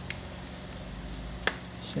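Two sharp clicks about a second and a half apart, from work on the shattered glass back of an iPhone 11 Pro Max around the camera, where the glass has to be broken out by impact. Under them runs a steady low hum.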